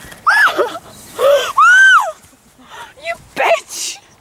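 Young women's voices squealing and shrieking in play: a string of short, very high-pitched cries that rise and fall in pitch, the longest and loudest about two seconds in, with shorter ones near the end.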